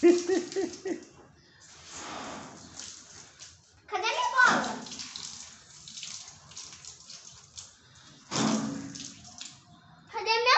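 Water jet from a garden hose pistol-grip spray nozzle hissing and spattering onto a bicycle wheel and wet tile floor, in several bursts.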